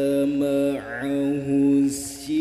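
A man chanting the Quran solo in the melodic tilawah style into a microphone: long held, ornamented notes, with a dip in pitch just before a second in and a brief break for breath near the end.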